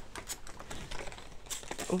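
Hand trigger spray bottle being worked: a few sharp clicks of the trigger, then short hissing spritzes of water mist onto mango leaves near the end.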